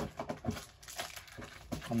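Foil Pokémon card booster packs crinkling as they are handled and shuffled together, in short irregular crackles.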